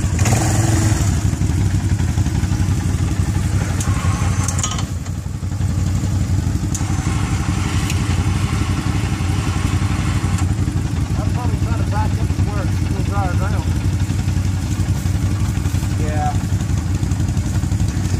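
ATV engine running steadily, a low drone that dips briefly about five seconds in.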